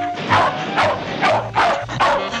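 A cartoon dog barking several times in quick succession, about twice a second, over background music.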